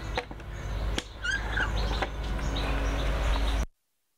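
Birds chirping over a steady low outdoor rumble, with a few sharp clicks; the sound cuts off abruptly shortly before the end.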